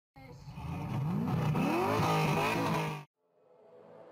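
Honda Civic hatchback's engine revved hard through its exhaust for a sound-level test, the revs rising then held high. It cuts off suddenly about three seconds in.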